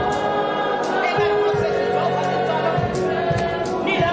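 A choir singing a gospel hymn in long held notes, with a steady low accompaniment beneath.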